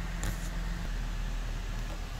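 Buick 3800 V6 idling, heard from inside the cabin as a steady low hum together with the climate-control fan blowing, with one soft click about a quarter second in.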